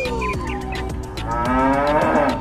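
Cow mooing, laid over background music with a steady beat. One call falls away at the start, and another rises about a second and a half in.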